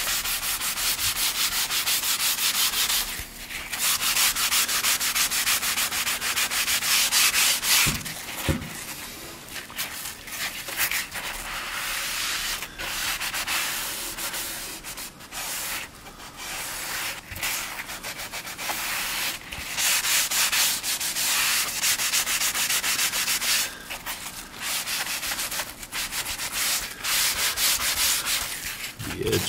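Hand sanding sponge rubbed along the grain of a white-primed, black-glazed oak cabinet door in rapid strokes, with brief pauses about three and eight seconds in. The sponge is cutting back the white primer so the black glaze in the open oak grain shows through.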